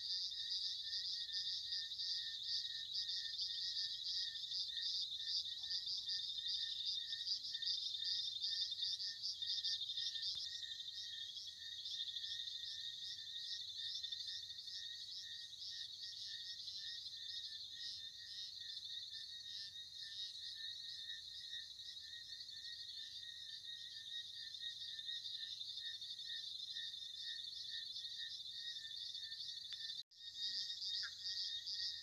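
Evening insect chorus: a dense high trill pulsing rapidly without a break, with a second, lower pulsing note running underneath. It turns a little quieter after about twelve seconds.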